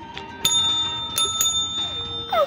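Red service bell (desk call bell) rung three times: once about half a second in, then two quick strikes close together, each leaving a high, steady ring.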